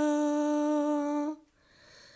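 A woman's voice singing a hymn unaccompanied, holding one long note that stops about one and a half seconds in, followed by a short silent pause before the next line.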